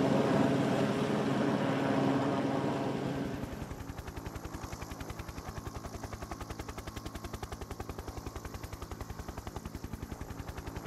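Street noise of cars driving slowly past, with a steady engine hum. About three and a half seconds in, it cuts to the rapid, even chop of a helicopter's rotor, about ten beats a second.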